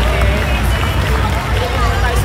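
Crowd chatter from a large standing audience, many voices talking and calling out at once over a steady low rumble.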